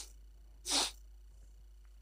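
A single short, breathy burst from a man, under a second in, without voice or pitch: a quick sniff or puff of breath.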